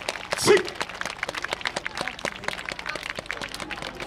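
Audience clapping: scattered applause from many hands, with a short shout from one voice about half a second in.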